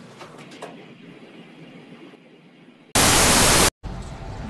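Faint room hiss, then about three seconds in a loud burst of white-noise static lasting under a second that stops abruptly: a static transition effect at the cut between two clips.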